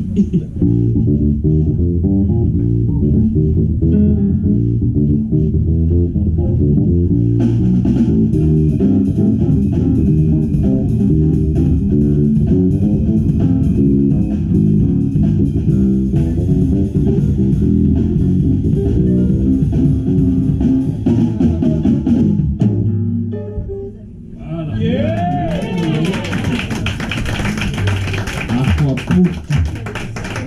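Live band music: an electric bass guitar plays a busy low line, and a drum kit joins about seven seconds in. After a brief break about three-quarters of the way through, a brighter passage heavy with cymbals begins.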